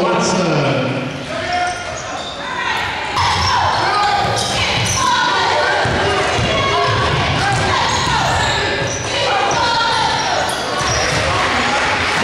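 Basketball game in a gym: a ball being dribbled on the hardwood court, repeated thuds, amid the voices of players and spectators echoing in the hall.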